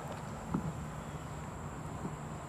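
Quiet outdoor ambience: a steady high-pitched insect drone over low background noise, with one brief short sound about half a second in.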